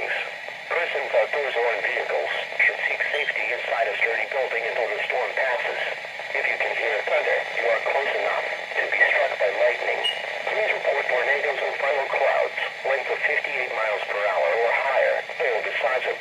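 A weather radio's small speaker playing a voice that reads out a severe thunderstorm warning without pause, with a thin sound that has no bass.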